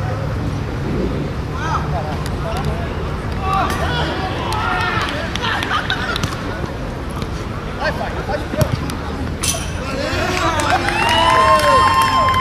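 Footballers calling and shouting to each other during play, with a long drawn-out shout near the end, over a steady low hum. There is a sharp knock about nine and a half seconds in.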